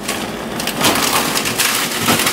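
Plastic bags of frozen food crinkling and rustling as they are handled and pushed around inside a freezer compartment, a dense run of small crackles.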